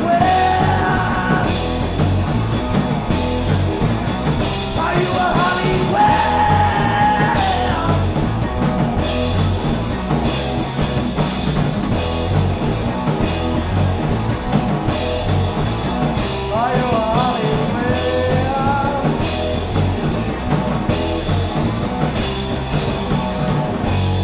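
Punk rock band playing live: bass guitar, electric guitar and drum kit with cymbals, with a male singer's lines coming in near the start, again from about five to eight seconds in, and again around seventeen seconds in.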